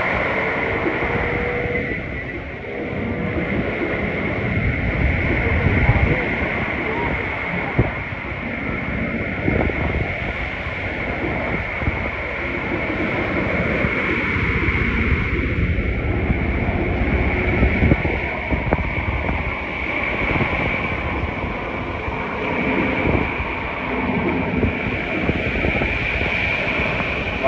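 Beach ambience: small waves washing onto the shore under a steady rush of noise, with faint voices in the background.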